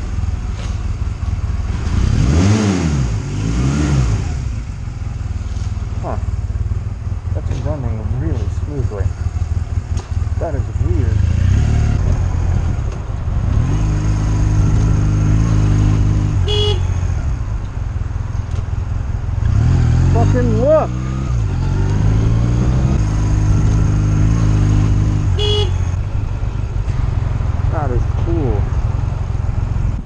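Honda Rebel motorcycle engine pulling away and riding through city traffic. It revs up and drops back as it shifts, with rising and falling pitch, then holds steady between shifts. Two brief high-pitched sounds come about halfway and again past three-quarters.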